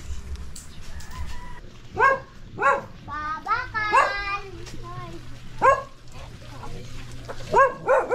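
A dog barking: about five short, sharp barks spaced a second or two apart, with a brief yelping cluster in the middle.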